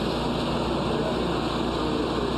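Steady drone of a parked coach's engine idling close by.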